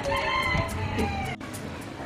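A rooster crowing once, a long call that sinks in pitch toward its end and stops about a second and a half in, followed at once by a sharp click.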